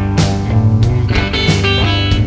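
Instrumental stretch of a guitar-led rock song: electric guitars playing with sharp percussive hits and no singing.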